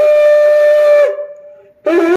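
A long curved shofar blown in a loud, steady single-note blast for about a second that drops in pitch as it ends, then after a short break a second, lower blast begins near the end.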